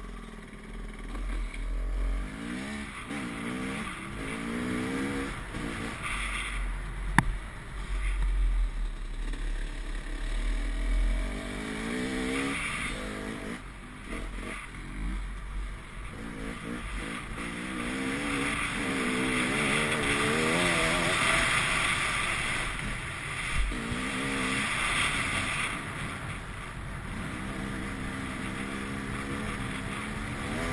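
Dirt bike engine heard from the rider's helmet camera, its pitch rising and falling again and again as it accelerates, changes gear and backs off, with wind buffeting the microphone. A sharp knock sounds about seven seconds in.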